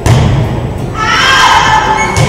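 A loud thud right at the start, then a high-pitched voice calling out from about a second in, in a gym.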